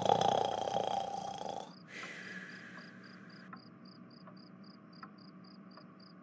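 A sleeping cartoon character snoring for the first couple of seconds. Then a cricket sound effect chirps steadily, about three chirps a second.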